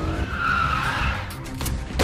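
Car tyres squealing for about a second, a wavering high screech over a low rumble.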